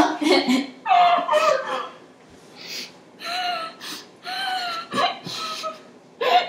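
Girls laughing in short bursts, then a few short muffled, closed-mouth vocal sounds from a girl holding a mouthful of ground cinnamon that she has not yet swallowed.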